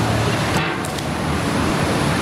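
Steady, even background noise of an outdoor location, a traffic-like rumble and hiss with no clear single source.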